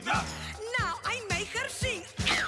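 Song with band accompaniment: the frog singing trio lets out a quick run of short yelping vocal cries, about four a second, each sliding in pitch.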